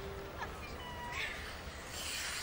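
A short, high-pitched call from a person's voice, held briefly on one pitch, over faint arena background noise.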